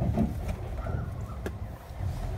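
Pickup truck pulling away on a gravel drive: a steady low engine and tyre rumble, with one sharp knock about one and a half seconds in.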